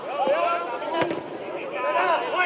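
Voices calling out on the pitch, with a sharp knock about a second in and a couple of fainter clicks around it.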